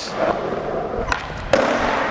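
Skateboard wheels rolling on smooth concrete during a big-flip attempt, with a sharp clack about a second in and another knock of the board half a second later.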